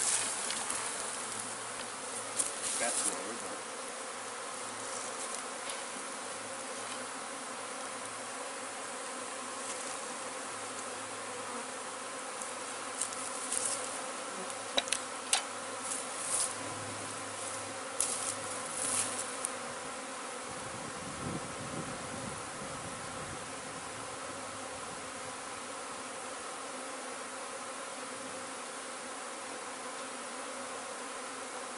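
Honey bee swarm buzzing: a steady, dense hum of many bees in the air. A few brief clicks and rustles come through at the start and again in the middle.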